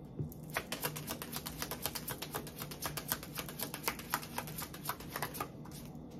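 A deck of tarot cards being shuffled by hand: a rapid run of light card clicks, about eight a second, starting about half a second in and stopping shortly before the end.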